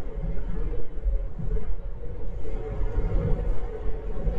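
Steady low road rumble and wind noise inside the cabin of a Tesla Model 3 driving at highway speed.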